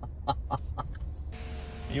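A man's chuckling laughter in short, rhythmic bursts that fade out within the first second. About a second and a half in, a steady whirring hiss starts abruptly: a car's power window motor lowering the glass.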